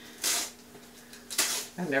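Fiberglass strapping tape being peeled off the end of a cardboard mailing tube: two short tearing rasps, one about a quarter second in and another a second later.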